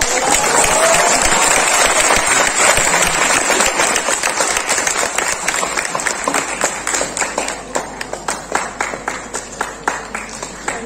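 Audience applause in a hall: dense clapping for the first half, thinning out into scattered individual claps toward the end.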